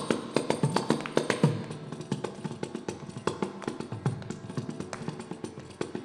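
Two kanjiras (South Indian frame drums) played in a fast percussion passage: dense hand strokes with deep thumps, the playing softer after about a second and a half.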